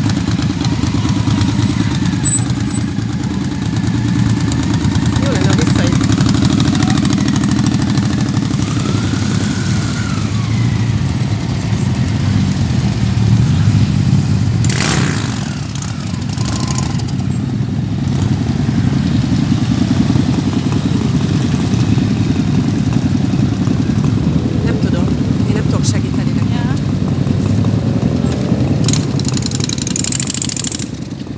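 A procession of motorcycles, mostly cruisers, rolling slowly past one after another, their engines making a steady low rumble. About halfway through, a short rushing noise passes and the rumble eases briefly before building up again.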